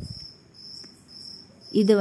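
Insect chirping: a high, steady note repeating in short pulses, about two a second. A soft knock is heard right at the start.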